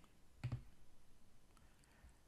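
A single computer mouse click about half a second in, with a few faint clicks after it over otherwise quiet room tone.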